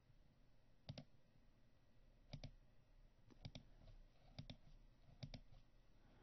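Near silence broken by faint clicks, each a quick double click, five times at roughly one-second intervals.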